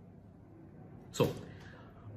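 A pause in a man's talk: faint room tone, then he says one word, "So", with a sharp "s", about a second in.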